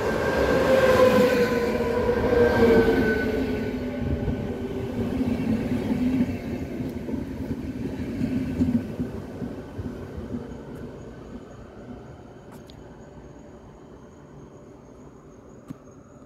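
ČD class 471 CityElefant double-deck electric multiple unit passing close along the platform, its motor whine sliding down in pitch as it goes by over the rolling wheel noise. The sound is loudest in the first few seconds, then fades steadily as the train draws away down the line.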